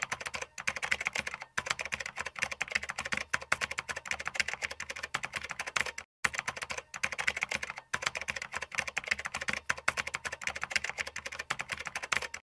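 Typing sound effect: fast, dense keyboard clicks with a few brief pauses, the longest about six seconds in.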